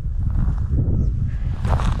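Footsteps on dry, burned grass and soil, over a steady low rumble.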